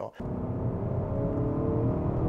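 Cabin sound of a 2019 Honda Accord's 2.0-litre turbocharged four-cylinder, running on a KTuner ECU tune, pulling under hard acceleration: a steady low engine and road rumble with a faint engine note.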